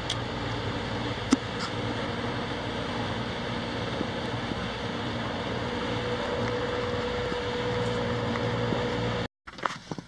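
Steady engine drone of a passing shrimp boat, a butterfly-net skimmer trawler, with a sharp click about a second in. The sound cuts off abruptly near the end.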